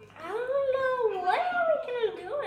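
A child's high voice singing a few drawn-out, wordless notes that step down and back up in pitch.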